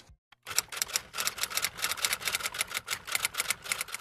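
Typewriter sound effect: rapid key clicks, about ten a second, starting about half a second in and running on as text types onto the screen.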